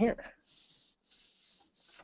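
A hand sliding over a sheet of release paper laid on a printed T-shirt, in three faint rubbing strokes. The strokes press the raised fibre fuzz back down into the white ink.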